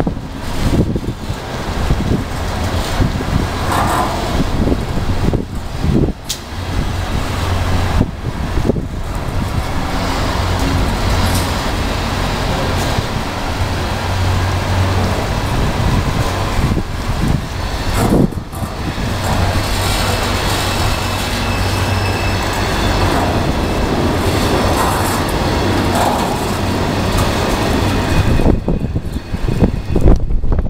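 CSX double-stack container freight train rolling past: steady rolling noise of steel wheels on rail, with an occasional sharp knock from the cars.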